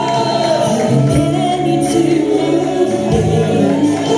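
Gospel choir singing a solemn worship song, holding long sustained notes.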